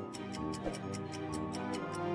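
Quiz countdown music: a sustained tune with a fast, even ticking of about five ticks a second, like a clock timer.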